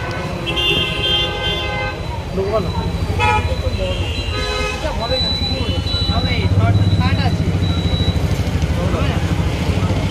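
Street traffic: vehicle horns honking several times in the first half, over a steady low drone of engines.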